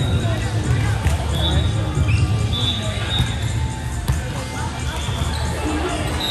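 Busy indoor sports hall: balls bouncing and striking the hardwood floor, with a sharp impact about a second in and another about four seconds in, and several short high sneaker squeaks on the court, over background voices and music.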